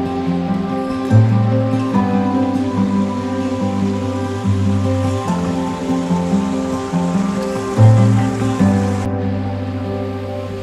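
Background music, with sustained notes over a bass line that steps to a new note every second or two.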